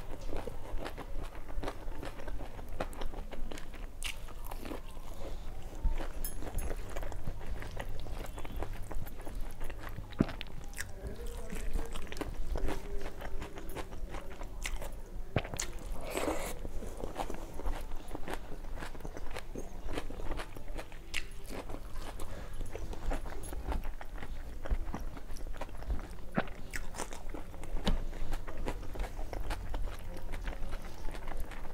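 Close-miked mouth sounds of a person eating with her hands: chewing, biting and some crunching of food, with many small wet clicks throughout.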